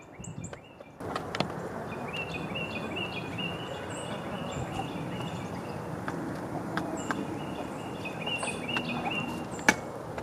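Outdoor ambience at a hen run: a steady background hiss with faint, repeated short bird chirps, starting about a second in after a near-quiet moment. A single sharp click comes near the end.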